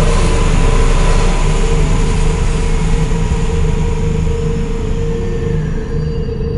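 A loud, steady wash of noise with a low droning tone beneath it, thinning out near the end: a dark ambient sound effect.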